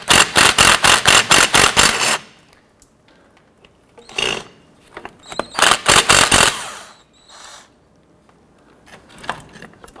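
A power tool drives a 15 mm deep socket to spin off the engine mount bracket nuts. It runs in a long pulsing burst of about six pulses a second for the first two seconds, then in shorter bursts around four and six seconds in.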